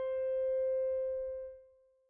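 A single piano note, the eighth degree of the scale (the upper octave of the tonic), sustaining after its strike and dying away about a second and a half in.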